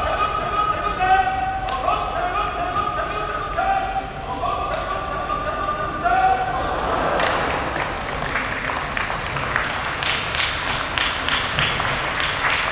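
A sumo referee (gyoji) calling out to the wrestlers in long, held, sing-song cries that shift in pitch while they grapple, with a few sharp slaps or knocks. From about seven seconds in, as the bout ends, spectators clap.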